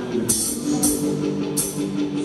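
Live rock band playing an instrumental passage between sung lines: drum kit with a cymbal strike about three times, over held electric guitar and bass notes.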